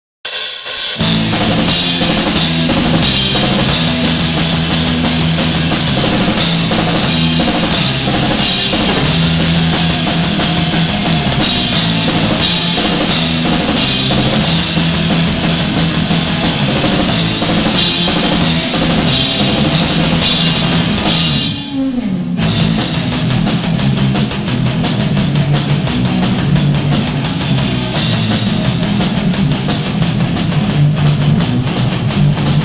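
Rock band playing an instrumental passage with the drum kit to the fore, cymbals and bass drum included. A little past two-thirds of the way through, the band stops for under a second, then comes back in.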